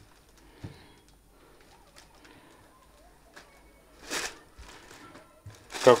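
Soft rustling and handling of a thin synthetic dress as it is unfolded and spread out by hand, with faint scattered clicks and one short louder swish about four seconds in.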